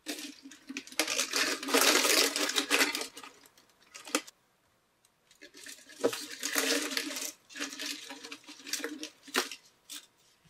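Thin 3D-printed PLA ear savers clattering against each other and the plastic food dehydrator tray as a handful is dropped in and spread out by hand. There are two spells of light rattling with a few sharp clicks, and a short pause between them.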